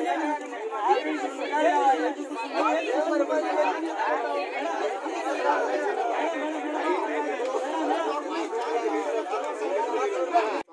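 A crowd of people talking over one another, many voices overlapping at once with no single speaker standing out.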